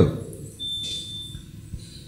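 A thin, steady high-pitched tone, like a faint beep or whine, sounding for under a second about half a second in, over low room hiss.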